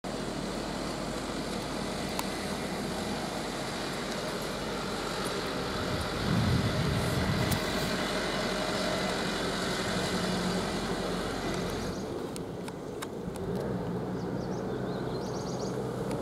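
A minibus driving past close by on a wet road, its engine and tyres loudest about six to seven seconds in. After an abrupt change at about twelve seconds, a heavy truck's engine is heard more distantly as it climbs through a hairpin bend.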